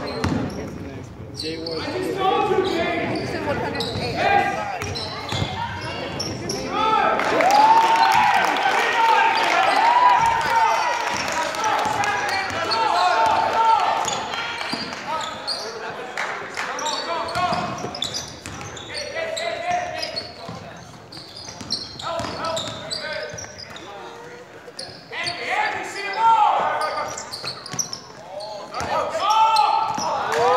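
Basketball being played on a gym's hardwood court: the ball bouncing, sneakers squeaking and players and spectators calling out, all echoing in the large hall. The din eases for a few seconds past the middle, then picks up again near the end.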